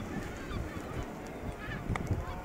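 Honking calls of seabirds in a breeding colony, over a low wind rumble on the microphone.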